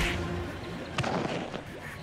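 Two sharp punch hits about a second apart in a fistfight, over background music.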